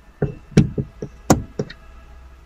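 Plastic push-buttons on a car's overhead dome-light console clicking as they are pressed, about six or seven sharp clicks in quick succession.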